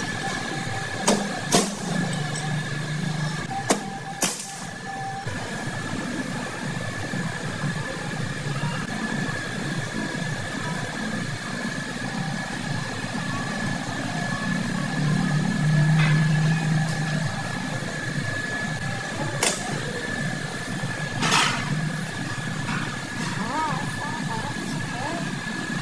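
Scattered sharp metal clicks and knocks of tools against a brake drum hub during wheel bearing work, over steady workshop noise with a continuous high-pitched whine.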